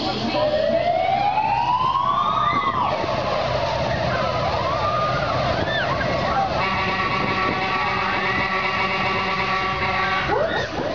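Fairground ride's sound system playing a siren-like effect: a tone rising for about two seconds and then dropping away. Short high yelps follow, and a held chord of music comes in about six and a half seconds in, over the ride running.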